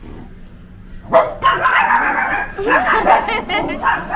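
Indian Spitz dogs barking and yapping repeatedly, starting about a second in.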